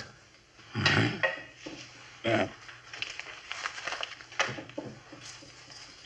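Radio-drama sound effect of a man emptying his pockets onto a table: a scatter of small clicks and light knocks as objects are set down one after another, after a brief spoken word about a second in.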